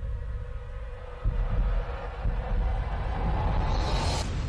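Dramatic sound-design bed of a deep, steady rumble that jumps louder about a second in, with a hissing noise swelling upward into a whoosh near the end.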